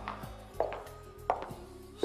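Three sharp knocks, about two-thirds of a second apart, each with a short ringing tail, over faint sustained background music.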